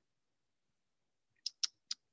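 Three quick, sharp computer clicks about a second and a half in, after near silence.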